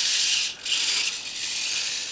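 The small geared drive motors and pivot servo of a hobby robot run as it turns to track a flame, giving a high, rattling mechanical buzz. The buzz breaks off briefly about half a second in, then starts again.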